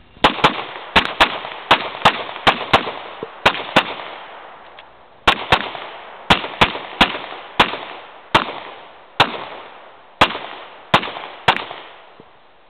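Semi-automatic pistol firing a string of about twenty shots, many as quick pairs, with a pause of about a second and a half around four seconds in; each shot leaves a short echo.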